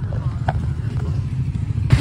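Motorcycle engine running, a steady low rumble with rapid firing pulses.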